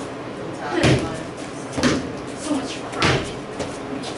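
A training broadsword striking a freestanding rubber torso striking dummy three times, about a second apart. Each is a sharp hit with a dull thud.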